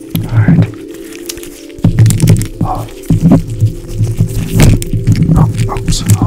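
Stethoscope tubing and chest piece rubbing and tapping right on a microphone, giving irregular, loud low thumps and crackles, thickest from about two seconds in, over soft steady background music.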